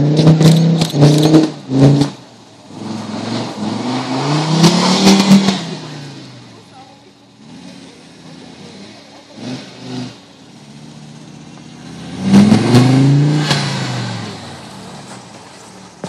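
Laughter in the first two seconds. Then an Audi 80's engine revs up and drops back twice, peaking around five and thirteen seconds in, as the car power-slides on packed snow.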